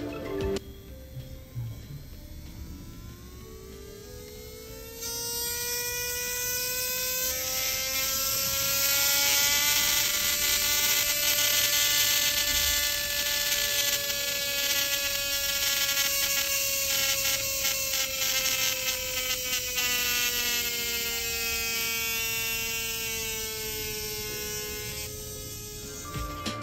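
Electric nail file (e-file) motor spinning a mandrel bit with a sanding band: a high whine that climbs in pitch over the first several seconds, holds steady, then drops as it slows near the end. The mandrel bit makes it run a little louder than a regular bit would.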